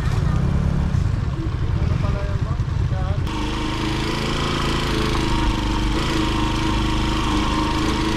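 Single-cylinder Honda TMX125 motorcycle engine idling with a low, uneven putter. About three seconds in the sound cuts to the engine running steadily under way, with an added hiss of riding.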